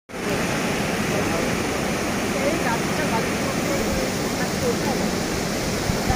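Floodwater rushing and cascading through a breach in an earthen river embankment, a steady, unbroken noise of fast-moving water.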